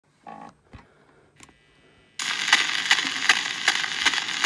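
A few faint knocks, then about two seconds in the hiss and crackle of a 1910 recording's surface noise comes in suddenly, with sharp clicks repeating about every half second.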